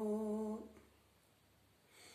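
A man's unaccompanied voice holding a long, steady hummed note with lips closed, the close of a line of a Turkish ilahi (devotional hymn); the note ends a little over half a second in.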